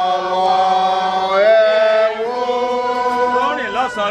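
Voices singing a slow chant-like hymn in long held notes, the pitch shifting and wavering only now and then.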